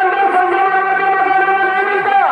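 A man's voice holding one long, steady, drawn-out note through a microphone and horn loudspeaker, an announcer's call.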